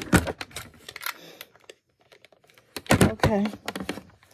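An irregular run of sharp clicks and rattles from handling a home blood pressure monitor and its cuff, in two clusters: one at the start and a shorter one about three seconds in.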